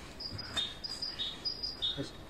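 A small songbird singing a repeated two-note phrase: a higher whistled note followed by a lower one, three times in quick succession.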